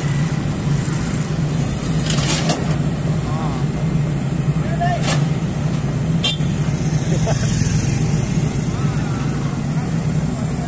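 JCB tracked excavator's diesel engine running steadily under load as it presses its bucket on the truck bed, with a few sharp metallic clanks about two, five and six seconds in.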